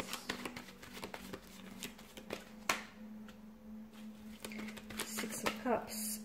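Tarot cards being handled and laid out on a table: a scatter of light card snaps and slides, with one louder snap a little before the 3-second mark, over a faint steady hum.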